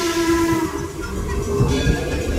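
Steam locomotive whistle holding one steady note, then dying away under a second in. After it comes the low rumble of the moving passenger train.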